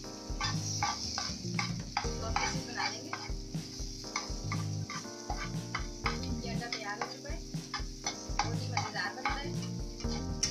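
Metal spatula scraping and stirring scrambled egg keema in a black kadhai, over a steady sizzle of frying oil. The scrapes come irregularly, a few each second.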